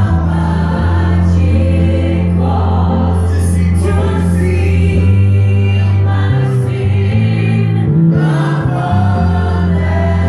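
Live gospel music: a choir singing over a band, with an electric bass guitar holding long, loud low notes that change pitch a few times, near the end of the first half and again later on.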